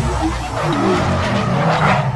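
Car sound effect: tyres skidding and a car rumbling, mixed over a music sting, with a rising noise toward the end.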